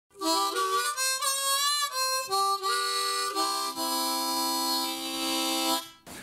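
Harmonica (blues harp) playing a quick run of short notes and chords, then holding one chord for about two seconds before stopping.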